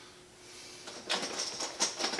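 Quiet room tone with a faint hum, then from about a second in a few short clicks and knocks of glass bottles and bottling gear being handled at a kitchen sink.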